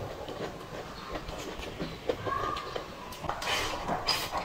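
Close-miked chewing: steady, irregular wet clicks of a mouthful of braised pork belly and rice being chewed. A short squeak comes about two seconds in. Near the end there is a brighter hissy burst as rice is shoveled from a glass bowl into the mouth with chopsticks.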